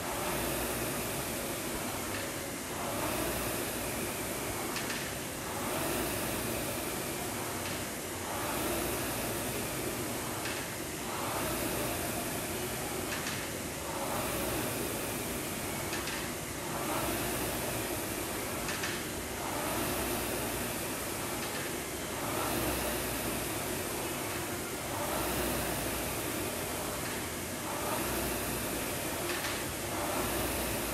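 Air rowing machine's fan flywheel whooshing with each drive stroke, swelling and fading about every three seconds, with a light knock near each stroke.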